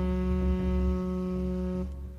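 Jazz recording playing: a horn holds one long note over low bass, and the note stops just before the end.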